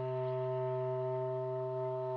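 Bass clarinet holding one long low note, steady in pitch and level.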